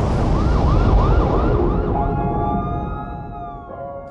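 Emergency-vehicle siren in a fast yelp, about four sweeps a second. About two seconds in it changes to a slow wail that rises and then falls, over a deep low rumble.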